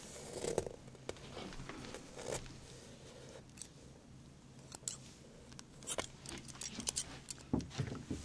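Hair-cutting scissors snipping irregularly right at the microphone, mixed with the rustle of hands and clothing moving close by; the snips come more thickly in the last few seconds.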